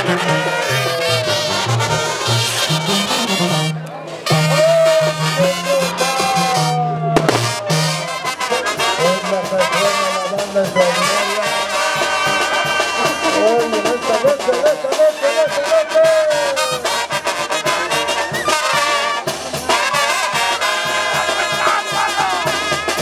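Brass band music in Mexican banda style: trumpets and trombones playing over a stepping bass line, with brief breaks twice in the first several seconds.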